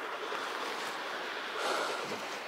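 Steady outdoor hiss with a person breathing close to the microphone, a slightly louder breath near the end.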